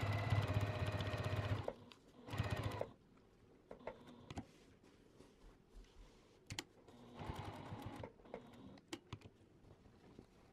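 Juki TL2000 Qi sewing machine stitching a cotton webbing strap onto a quilted panel. It runs steadily and stops about two seconds in, then runs again in a short burst. After that there are only a few light clicks and a quieter stretch of sound near the end.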